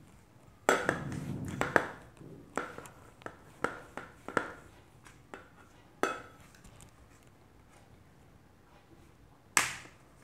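A metal pipe used as a rolling pin, rolling and knocking on a wooden tabletop as it flattens a sheet of clay. There is a rumbling roll with knocks about a second in, then a run of separate sharp knocks, and one loud knock near the end.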